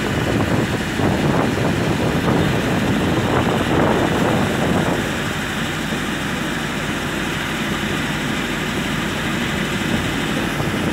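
Train running across a bridge, heard from a carriage window: steady rumble of wheels on rails mixed with wind noise, a little louder in the first half and easing slightly about halfway through.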